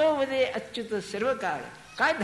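A man's voice speaking in a sermon-like delivery, with drawn-out, rising and falling vowels.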